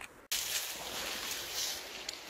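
A brief dropout, then the steady rushing hiss of river water flowing past the bank.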